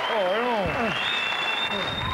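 Studio audience applauding, with a voice letting out a wavering 'ooh' in the first second.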